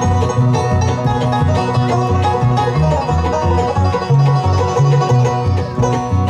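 Live bluegrass band playing an instrumental break: fiddle bowing the lead over banjo, acoustic guitar and an upright bass walking steadily underneath.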